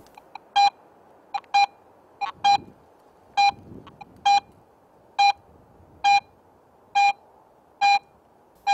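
Garrett AT Pro metal detector in Pro mode giving a loud, short beep each time the search coil sweeps over a shallow silver coin: nine beeps at an even pace, about one a second, a few with a fainter blip just before. Its Pro-mode audio is proportional, so the loud beep tells that the target lies shallow.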